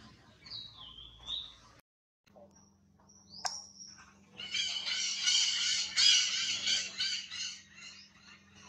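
High-pitched wild animal calls: a few gliding chirps in the first two seconds, then a loud, dense chorus of rapid chirping for about three seconds in the second half, over a faint steady hum.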